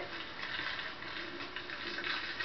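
Light crackling and clicking of plastic wrappers and candy being handled by a small child, a patter of short crisp clicks.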